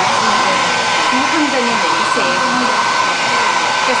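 Hair dryer switched on just at the start and running steadily, a rushing blow with a steady whine, drying a wet watercolor wash.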